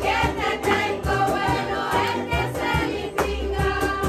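Group of voices singing together over many small guitars strummed in a steady rhythm, with a woman's voice leading.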